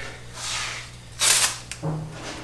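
Orange tape being pulled off its roll: a softer rasp a quarter-second in, then a louder, brief rip just past a second.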